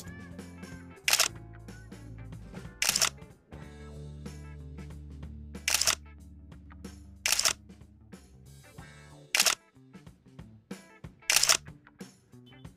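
Background music with a camera shutter sound effect: six short, loud shutter clicks, one every two seconds or so.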